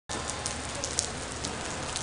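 Heavy rain falling on a wet stone-paved street: a steady hiss of rain with a few sharper spatters.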